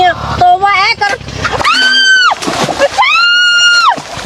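A woman speaks briefly, then shrieks twice, each a long high-pitched cry held steady before it drops away, while water splashes around her as she ends up in the canal.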